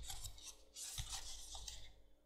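Card leaflet rustling and rubbing against cardboard packaging as it is handled, in two stretches of soft scraping.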